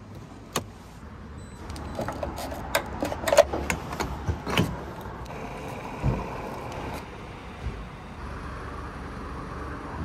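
Clicks and knocks of a truck's fuel door, filler cap and pump nozzle being handled, then a steady hiss of fuel being pumped into the tank from about five seconds in.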